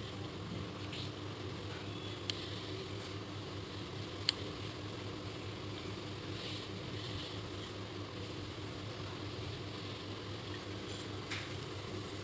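Steady low room hum, with a few faint scratches of a pencil drawn along a plastic ruler on paper and two small clicks of the drawing instruments.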